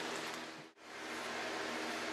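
Low, steady background hiss with a faint hum: garage room tone. It drops out briefly less than a second in, where the recording is cut.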